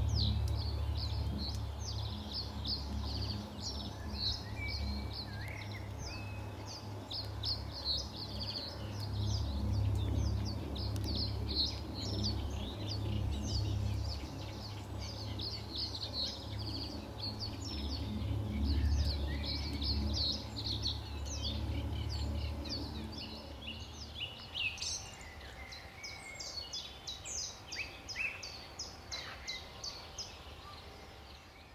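Wild birds singing: a dense stream of quick, high-pitched chirps and trills from several birds, over a low steady rumble that stops about three-quarters of the way through.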